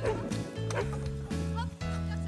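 A dog barking repeatedly in short, excited barks, several a second, over background music with a steady bass line.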